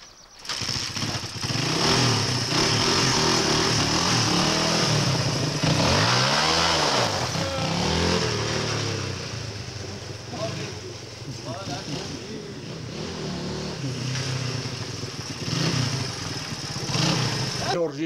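A small trail motorcycle's engine starts about half a second in, then runs and is revved as the bike pulls away and rides off. Its pitch rises and falls around six seconds in, and the sound eases somewhat in the second half as the bike moves off.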